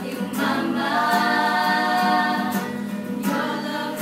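A group of adults and children singing together to an acoustic guitar, holding one long note for about a second and a half starting about a second in.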